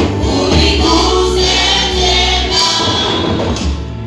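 A choir and congregation singing a gospel worship song over steady low accompaniment.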